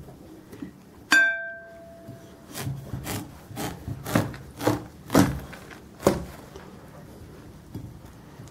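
A knife cutting through the rind of a ripe Izumrud watermelon, which crackles with a string of sharp cracks, about two a second, for a few seconds. Crackling as it is cut is taken as the best sign of a good ripe melon. There is one sharp clink with a short ringing tone about a second in.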